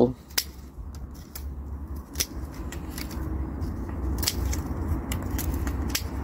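Bypass secateurs snipping through the dry, woody stems of a hardy fuchsia: four or five sharp snips at irregular intervals, over a low steady rumble.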